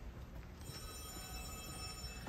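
A phone ringing faintly: an electronic ring tone of several steady pitches held together, starting a little way in.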